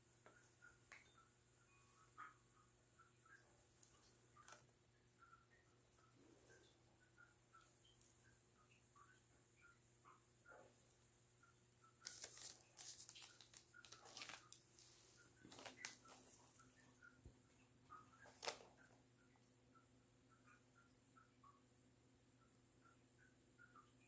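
Near silence: room tone with faint scrapes and rustles as hands work soft clay, and a short cluster of louder rustling about halfway through.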